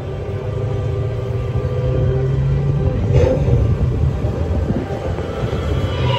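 Radiator Springs Racers ride vehicle rolling along its track with a steady low rumble that grows a little louder as it goes.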